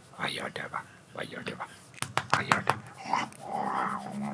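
A man whispering and cooing softly to a puppy, with a few sharp clicks a little past halfway.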